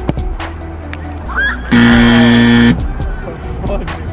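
A soccer ball kicked hard at the start, then a loud horn blast lasting about a second, steady in pitch, over background music.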